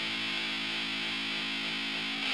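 Electric guitar chord held and sustaining steadily through a Fault V2 overdrive/distortion pedal set for heavy gain, with both gain stages stacked and the crush clipping stage adding a dense, fizzy distortion.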